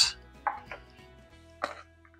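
Two metal serving spoons tossing a dressed ramen-noodle coleslaw salad in a plastic bowl: a few short scrapes and rustles, about half a second in and again near 1.6 s, over faint background music.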